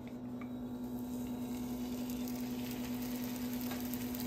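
Lachha paratha frying in oil on a hot pan: a steady sizzle that builds over the first second or two and then holds. A steady low hum runs underneath.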